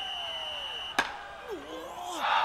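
A referee's whistle held as a steady high tone, ending the rally and the set, cut off about a second in by a sharp knock; a low falling groan follows.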